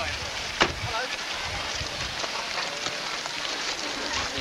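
A car door shuts with a single sharp knock about half a second in, over a steady outdoor hiss with faint voices.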